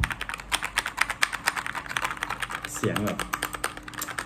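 Keychron K2 mechanical keyboard with red switches, its keys pressed rapidly by fingers: a fast run of keystrokes, about ten a second, that sound very solid.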